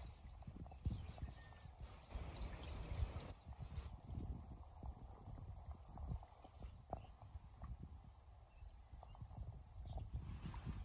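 Faint outdoor sound by a small stream: an irregular low rumble and knocks of wind and handling on the microphone over a faint hiss of running water, with an occasional faint bird chirp.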